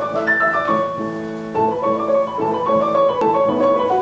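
Grand piano playing a classical piece: a continuous flow of notes and chords, mostly in the middle range.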